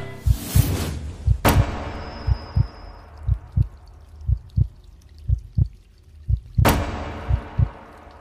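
Heartbeat sound effect: a pair of low thumps repeating about once a second, with a swoosh about half a second in and another near the end.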